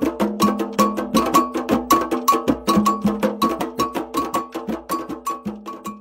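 Intro music of struck percussion: a bell-like metal percussion instrument hit in a fast, even rhythm, several strokes a second, growing quieter toward the end.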